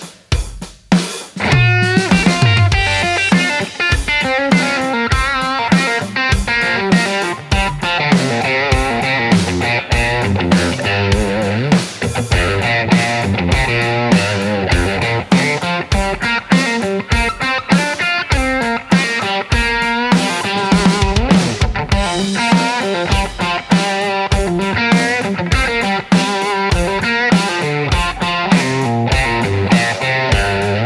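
Telecaster-style electric guitar improvising lead licks with string bends over a steady drum-groove backing track of kick, snare and hi-hat. The licks accent the drum hits and land on the beats.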